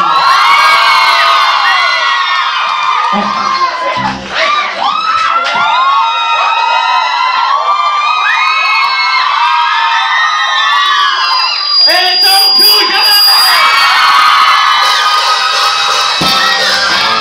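Audience cheering with many high-pitched screams and shrieks overlapping, loud throughout and dipping briefly about four seconds in.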